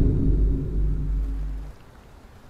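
Tail of a loud edited-in boom sound effect: a deep rumble with a few low pitched tones, fading and cutting off near the end.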